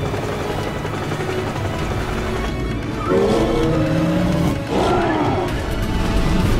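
Background music with a creature roar sound effect: two drawn-out growling calls that bend in pitch, starting about three seconds in.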